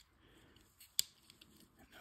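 Workbench handling during throttle body disassembly: one sharp click about halfway through, with a few faint ticks around it.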